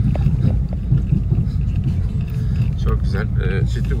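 Car driving slowly over the rough ground of a ploughed field, heard from inside the cabin: a steady low rumble of engine and tyres.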